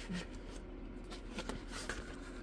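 Faint rubbing and rustling of a diamond painting canvas being slid and turned on a desk, with a few light ticks from handling.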